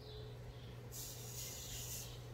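Faint hiss of granulated sugar pouring from a small bowl into a plastic blender cup, starting about halfway through and lasting about a second.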